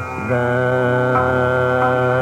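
Hindustani classical music in Raag Megh: one long, steady note held over the drone and accompaniment.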